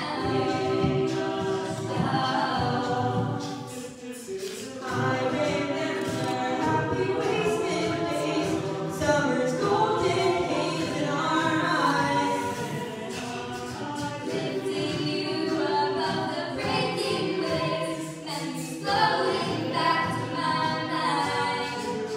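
A cappella group of mixed voices singing a pop arrangement, with lead voices on microphones over sustained backing harmonies. The sound dips briefly twice, then swells again.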